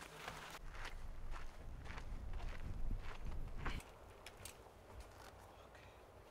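Footsteps of hikers walking on a dusty dirt trail, a run of short crunching steps that stops about four seconds in.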